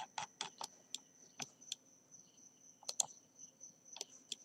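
Quick, light clicks of a computer keyboard and mouse: a run of taps in the first two seconds, a pause, then a couple more near the end, over a faint steady high-pitched electronic whine.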